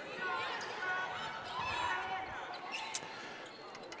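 Court sound from a live basketball game: a basketball dribbled on the hardwood floor, with faint voices and short high squeaks in the hall.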